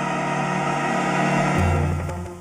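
Background music from a TV drama score: sustained, steady chords, with a deep bass note coming in about one and a half seconds in.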